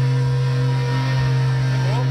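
Live metal band in concert holding a single low, steady sustained note, a drone with little movement over it.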